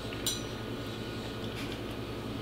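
A fork clinks sharply against a ceramic dinner plate with a short high ring about a quarter second in, then a fainter clink later, over quiet room tone.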